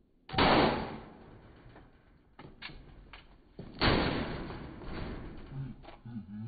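Two firework bangs set off inside a capped plastic bottle, about three and a half seconds apart, each fading out over about a second, with a few small crackles between them.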